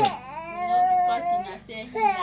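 Baby crying: one long, high wail held for over a second, then a short dip before the next cry begins at the end.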